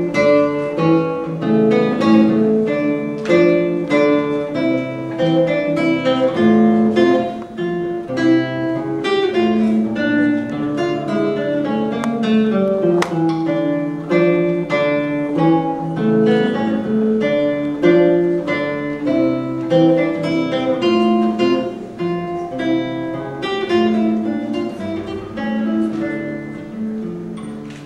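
Solo classical guitar played fingerstyle: a continuous flow of plucked nylon-string notes and chords, each note ringing on after it is struck.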